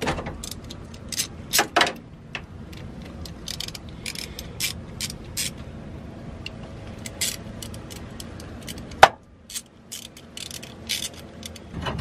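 Allen key working the mounting bolts of a Tremec TKX shifter: irregular sharp metal clicks and clinks, with a louder one about nine seconds in.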